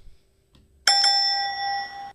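A single bell ding about a second in: one sharp strike followed by a clear ring of several steady tones that fades slightly and then cuts off after about a second, marking the trivia answer just announced.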